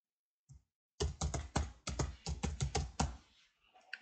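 Typing on a computer keyboard: one key tap about half a second in, then a quick run of a dozen or so keystrokes as a filename is typed.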